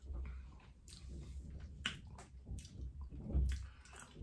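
Wet mouth sounds of a person tasting a mouthful of beer: lip smacks and tongue clicks, with several sharp clicks scattered through.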